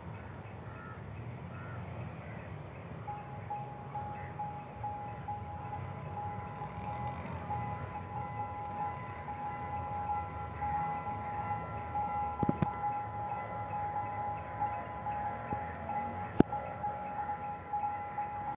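Level-crossing warning alarm: a steady, slightly pulsing electronic tone sets in about three seconds in, and further tones join it a few seconds later. Underneath is the low rumble of the approaching diesel rail car and the road traffic at the crossing. Two sharp knocks come in the second half.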